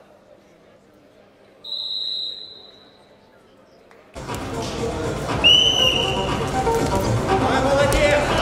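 Two blasts on a wrestling referee's whistle. The first comes about a second and a half in, lasting about a second and dipping slightly in pitch. The second, lower one comes at about five and a half seconds, over loud arena noise and voices that start suddenly at about four seconds.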